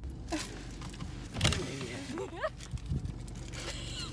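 Steady low hum of a car idling, heard from inside the cabin, with a muffled voice calling out from outside the car in short rising and falling cries around the middle.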